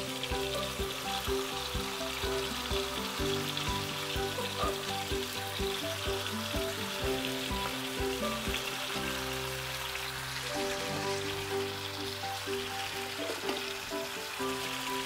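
Fish head and blended rempah spice paste sizzling in hot oil in a frying pan as the paste is poured and scraped in, a steady frying hiss.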